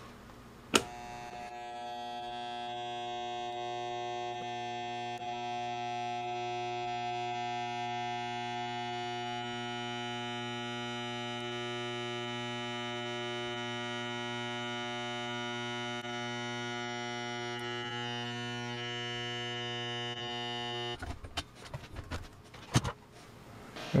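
High-voltage transient generator humming steadily: a mains-type buzz with many overtones that comes on with a click about a second in and stops after about twenty seconds, followed by a few clicks.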